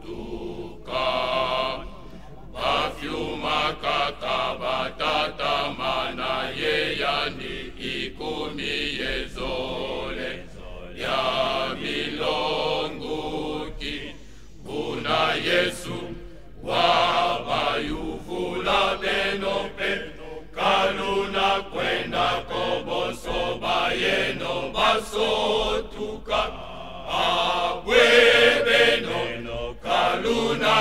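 A male vocal group singing together in a rhythmic, chant-like style.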